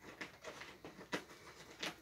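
Faint, scattered clicks and light rustles from a small plastic baby food cup being handled in the hands, about half a dozen small taps over two seconds.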